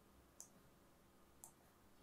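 Near silence with two faint computer mouse clicks, one about half a second in and another near a second and a half.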